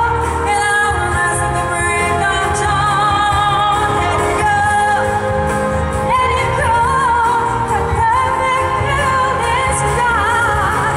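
Live pop ballad: a solo singer sings through a microphone over an amplified backing track. The singer holds notes with vibrato and sings quick runs in the second half.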